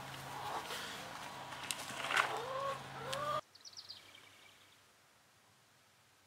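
Chickens clucking softly, with a few sharp scrapes or clicks from digging in soil. The sound cuts off abruptly a little over halfway through, leaving near silence.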